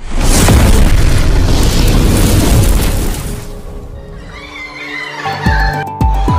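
A loud boom with a rushing swell of noise, the sound effect of an animated smoke intro, starts suddenly and dies away over about four seconds. About five seconds in, electronic music with a thumping beat begins.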